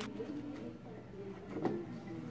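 A woman crying at a microphone: low, wavering, muffled sobs, with a short knock about a second and a half in.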